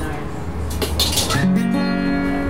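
Acoustic guitar playing an instrumental passage of a folk song: a few quick strummed strokes about a second in, then a new chord ringing on from about a second and a half.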